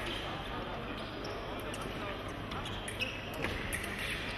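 Big-hall background murmur of voices, with a few faint taps from fencers' footwork on the piste about three seconds in.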